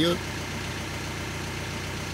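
A vehicle engine idling, a steady low hum with no change in pitch or level.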